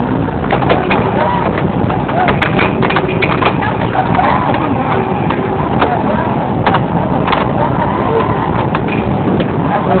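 Busy arcade din of many people's voices and game sounds, with frequent sharp clacks of air hockey mallets and pucks striking.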